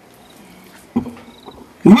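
A pause in a man's preaching: low room sound, a short vocal sound about a second in, then a loud, rough, forceful start of his voice near the end as he resumes speaking.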